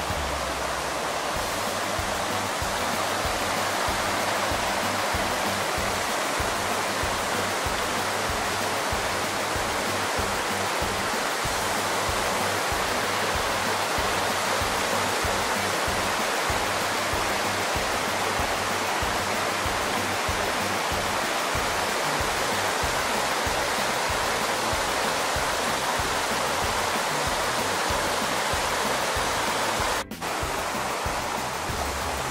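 Mountain creek rushing steadily over boulders and small cascades, a constant loud hiss of white water.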